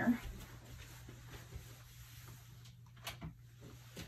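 Quiet room tone with a low steady hum, broken by one sharp click about three seconds in.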